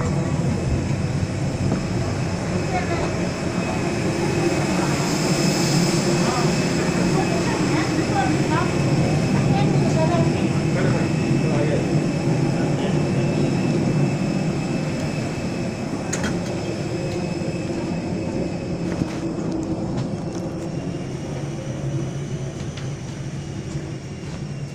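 Steady hum of a jet airliner parked at the gate, with thin high whining tones held over it, and voices chattering faintly in the background.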